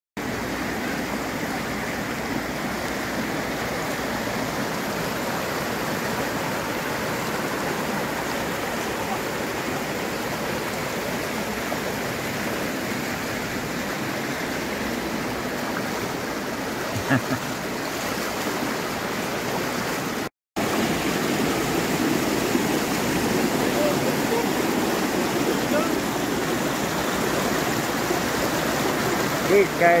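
Fast-flowing floodwater rushing through a flooded town street and spilling over a kerb, a steady rushing-water noise. The sound cuts out briefly about two-thirds of the way through.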